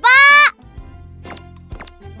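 A high, child-like cartoon voice calls out a drawn-out 'ba!' for about half a second, then light background music carries on with short notes about twice a second.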